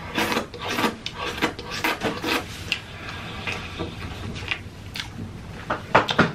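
Close-miked wet chewing, lip-smacking and finger-sucking of saucy curry eaten by hand, a quick run of smacks that thins out after about three seconds.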